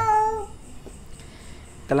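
A single brief high-pitched animal call, about half a second long and sagging slightly in pitch at its end. A low steady hum follows.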